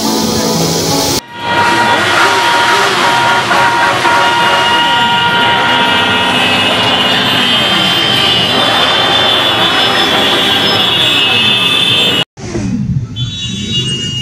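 Brief background music, then a mass of motorcycles at a bikers' rally: many engines revving at once, with horns sounding over them. Near the end the sound cuts to a quieter stretch of motorcycle engines running.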